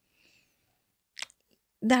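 A pause in a woman's speech: near silence, broken a little past one second in by a short, soft mouth click, before she speaks again near the end.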